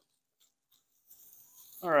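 Near silence at first. About a second in, a faint, soft rustle of a lightweight dry-fit polo shirt being held up and shaken out begins. A man starts to speak at the very end.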